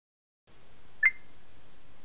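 A single short electronic beep about a second in, over a faint steady hiss.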